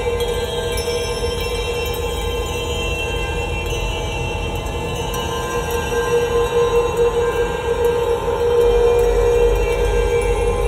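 Ambient drone music: layered tones held steady over a low rumbling noise, which swells slightly near the end.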